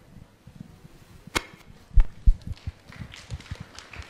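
Handling noise on a handheld microphone: a sharp click about a second and a half in, then two low thumps close together, with faint scattered knocks between.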